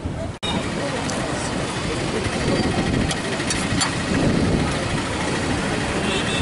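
Busy roadside street ambience: vehicle engines running and people talking, with a few sharp clicks. The sound drops out for an instant shortly after the start.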